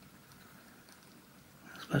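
Near silence: faint room tone, with a voice starting right at the very end.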